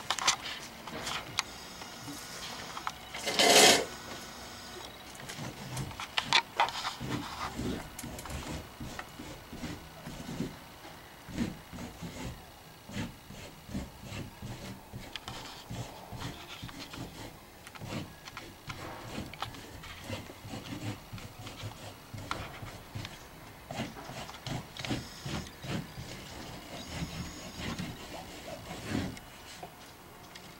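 Paintbrush scrubbing across a large sheet hung on a wall: a run of short, irregular rubbing strokes. One louder brief rustle about three and a half seconds in.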